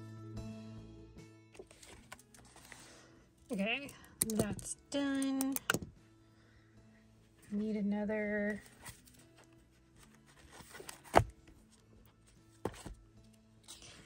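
Soft background music fading out, then a woman's short wordless vocal sounds: a few brief humming tones, one held and one wavering. A single sharp click about 11 seconds in is the loudest sound.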